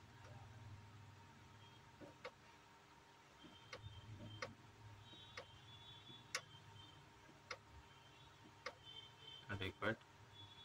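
Membrane keypad buttons on a soft starter's control panel being pressed, giving about eight single short clicks spaced a second or so apart, over a faint steady hum.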